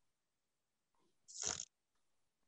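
Mostly silence, broken about a second and a half in by one short, breathy, hissy sound from the child, a sniff or breath-like noise between her halting answers.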